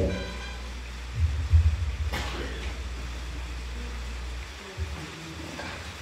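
Low steady hum from the hall's PA sound system, cutting off suddenly about four and a half seconds in, with a single click about two seconds in.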